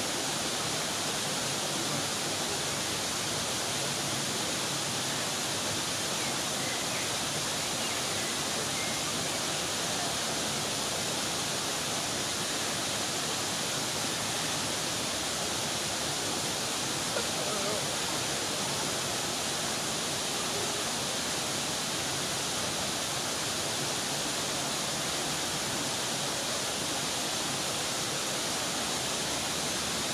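A small waterfall running steadily, an even hiss of falling water with no breaks.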